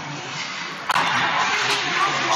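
Ice hockey play on the rink: skate blades scraping the ice and sticks on the puck, a steady rough noise that turns suddenly louder with a sharp knock about a second in.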